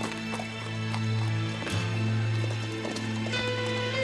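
Hoofbeats of a horse moving off at speed on a dirt street, irregular thuds over held music chords.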